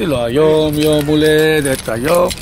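A man's voice holding one long, steady note for about a second and a half, like a sung or drawn-out syllable.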